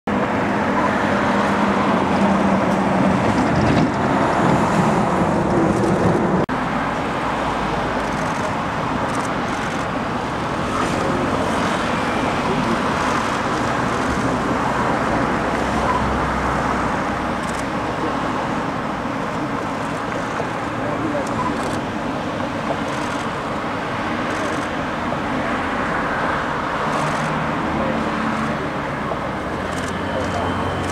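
Steady road traffic noise, an even rushing hum of passing vehicles. It is a little louder for the first six seconds, then drops a step and carries on.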